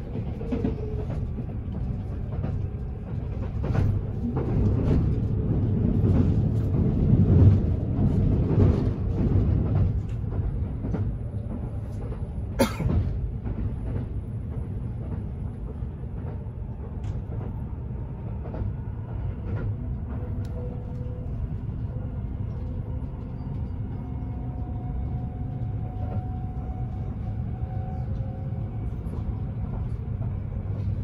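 Kintetsu 80000 series 'Hinotori' limited express running, heard from inside the passenger cabin: a steady low rumble with many small clicks, louder for the first ten seconds or so. One sharp click about twelve seconds in.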